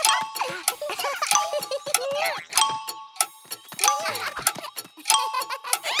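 Cartoon soundtrack: short chime-like two-note tones repeating several times, mixed with animated characters' giggling and chatter and a laugh at the very end.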